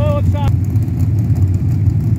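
Engines of a pack of dirt-track stock cars running at low speed, a steady low rumble with no revving. A PA announcer's voice is heard over it for the first half second.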